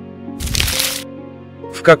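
A short burst of noise, about half a second long, from a slide-change sound effect over soft background music. A man's narrating voice comes in near the end.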